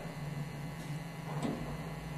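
A few faint clicks of a boiler control panel's push buttons being pressed, over a steady low hum.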